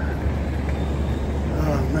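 Steady low rumble of outdoor city street background noise, with no distinct events, and a man's voice starting near the end.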